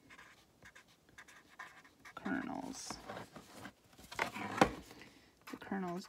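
Pen scratching on paper on a clipboard as words are written out, with one sharp knock about four and a half seconds in.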